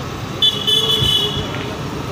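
A vehicle horn sounds once for about a second, starting about half a second in, over steady street-traffic noise.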